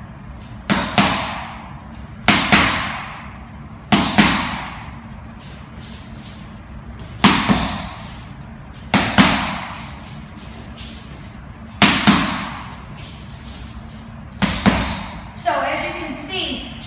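Boxing gloves striking focus mitts in one-two (jab-cross) combinations: seven pairs of sharp smacks, the two hits of each pair a fraction of a second apart, with a second or two between pairs.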